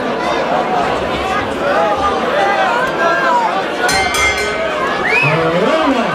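Crowd chatter in a hall. About four seconds in, a boxing ring bell is struck several times in quick succession, signalling the start of the round. Just after it, a rising shout comes from the crowd.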